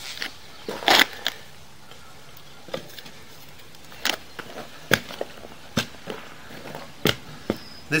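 Handling noise from sewer camera equipment: scattered light clicks and knocks, about one a second, over a low background.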